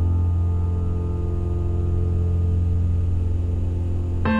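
Grand piano holding a low chord with the sustain pedal, the notes ringing on steadily with no new keys struck. A new chord comes in just after.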